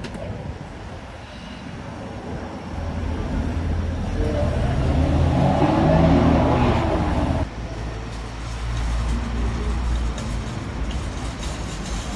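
Street traffic: a motor vehicle's engine running close by, growing louder over a few seconds and then cutting off suddenly about seven seconds in, over a steady low rumble.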